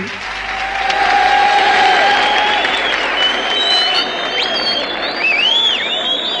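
Live concert audience applauding and cheering as a sung phrase ends, a dense, loud clapping that swells in the first two seconds.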